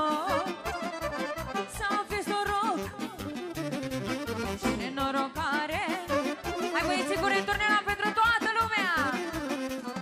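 Live Romanian lăutărească folk dance music from a band over PA speakers: a fast, ornamented lead melody over a steady dance beat, with a long downward slide near the end.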